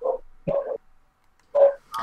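Three brief voice sounds, short bursts like a word, a grunt or a laugh, with short pauses between them.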